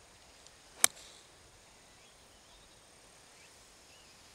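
A golf club striking a golf ball off the fairway: one sharp, crisp click a little under a second in, followed by faint outdoor background.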